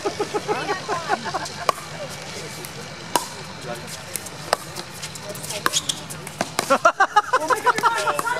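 A pickleball rally: sharp pops of hard paddles striking the plastic ball, roughly one every second and a half at first and quicker near the end as the players trade shots at the net.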